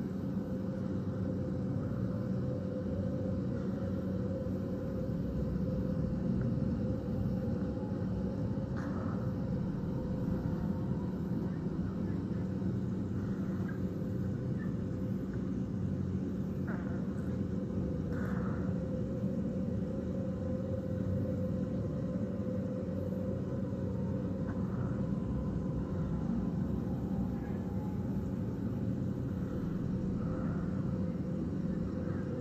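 Steady low rumble and hum of outdoor background noise, with a few faint brief sounds over it.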